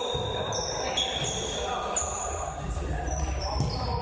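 Indoor futsal game: the ball thudding off feet and the hall floor amid players' footsteps and distant voices, echoing in a large sports hall.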